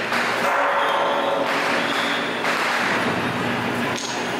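Loud, unbroken din of a Taiwanese temple ritual: dense noise with steady ringing tones through it, from the ceremony's music and the crowd.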